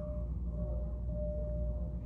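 Steady low rumble of room background noise, with a faint thin held tone over it that breaks briefly about half a second in.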